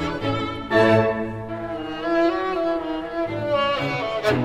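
Classical solo violin playing a sustained melodic line with vibrato over low, held string accompaniment. A strong new note comes in just under a second in.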